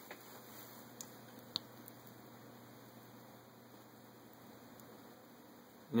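Quiet room tone: a faint steady hum and hiss, with one small sharp click about one and a half seconds in.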